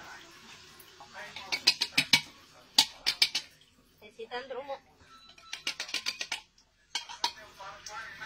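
Open metal food tin knocking and scraping against a small metal mesh strainer, heard as several clusters of sharp clinks as the fish is tipped out of the tin.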